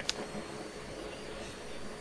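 Faint steady background hiss with a thin, high, steady whine, and no distinct event.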